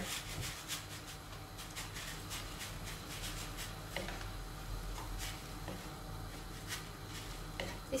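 Wooden spoon stirring and scraping minced meat around a non-stick wok, a scatter of soft scrapes and taps over a faint steady low hum.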